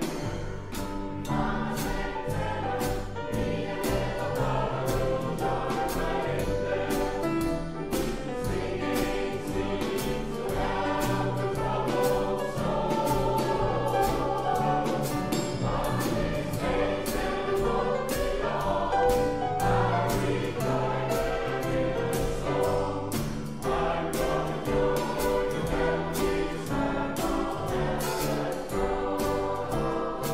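Mixed close-harmony choir singing an upbeat song in several parts, backed by piano and a drum kit keeping a steady beat.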